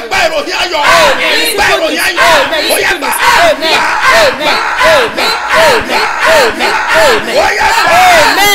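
A man shouting in fervent prayer: a rapid run of short cries, about two a second, each rising then falling in pitch.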